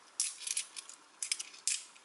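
20p coins clinking against one another as they are picked off a towel and stacked in the hand, in a few short clusters of sharp clicks.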